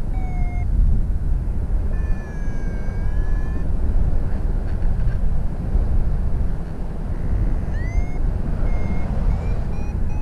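Steady wind rush over the microphone in paragliding flight, with electronic beeps from the pilot's Flymaster GPS SD variometer: a long wavering tone a couple of seconds in, then a rising chirp and short beeps near the end, the vario's climb tones.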